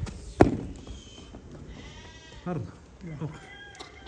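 A single sharp thump about half a second in, then sheep bleating in short calls that fall in pitch, twice near the end.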